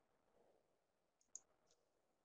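Near silence, broken a little past the middle by a few faint computer clicks as the presentation slide is advanced.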